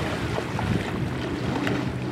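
Wind buffeting the microphone over shallow sea water, with splashing from legs wading through the water.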